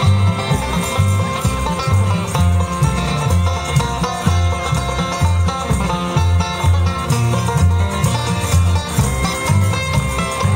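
Live bluegrass band playing an instrumental passage with banjo, fiddle, acoustic guitar and upright bass. The upright bass keeps a steady beat under the busy picking and bowing.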